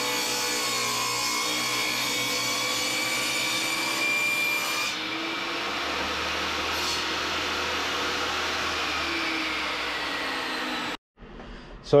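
Benchtop table saw ripping a pine board lengthwise: the blade cuts steadily under load for about eleven seconds, changes character about halfway through, then cuts off suddenly near the end.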